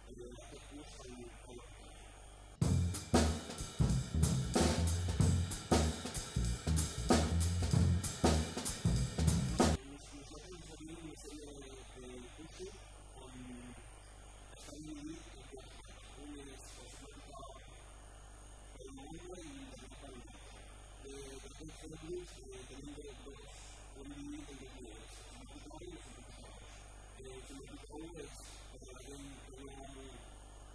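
A loud burst of drum-kit music, about seven seconds long, starting a few seconds in and cutting off abruptly. Before and after it, a man talking quietly.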